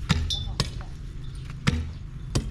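Long metal digging bar striking and levering at a mulberry tree stump and its roots in the soil: three sharp strikes at uneven intervals.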